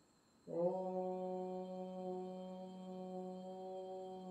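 A meditation drone tone: one steady low pitch with a stack of overtones, starting abruptly about half a second in and held, easing slightly in loudness.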